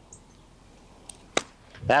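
A single sharp click as a wedge strikes a golf ball off bare, hard-packed dirt, about a second and a half in. It is a reasonably clean contact, which the golfer calls better than his last, fat one.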